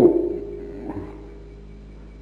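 A man's voice holds and trails off the end of a word. A pause follows with only the steady low hum and hiss of an old tape recording.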